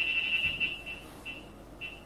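Uniden R7 radar detector (US version) sounding its K-band alert at a 24.192 GHz false signal that it cannot segment out. A steady high beep tone breaks off about half a second in, and short beeps at the same pitch follow twice.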